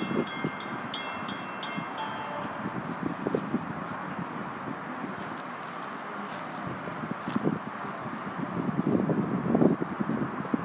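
Light-rail grade-crossing warning bell ringing in rapid, evenly spaced dings, stopping about two seconds in. After that, a steady outdoor rumble of traffic and wind, growing louder and more uneven near the end.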